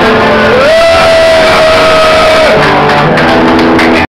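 Punk rock band playing live and loud, with distorted electric guitars, bass and drums. About half a second in a single high note slides up and holds for about two seconds, then the chords come back.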